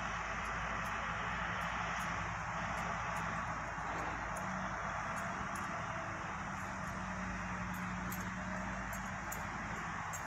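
Heavy diesel earthmoving machines, motor scrapers and an articulated dump truck, running at a distance as a steady drone. A low engine note grows stronger about halfway through.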